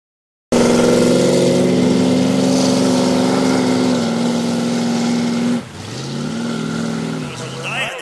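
Race boat engine running at high revs with a steady note. Past the halfway mark it drops to a quieter engine note that rises in pitch and then holds.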